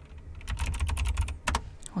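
Typing on a computer keyboard: a quick, uneven run of key clicks starting about half a second in, one louder click near the end.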